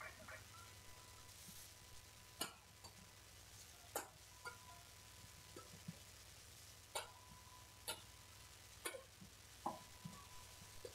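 A badminton rally: rackets strike a shuttlecock back and forth, about six sharp hits spaced a second or so apart, faint against a quiet hall.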